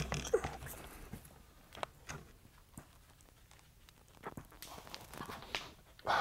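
Faint breathing and scattered light taps and scuffs from a man doing push-ups on a bare concrete floor, with a few louder breaths near the end.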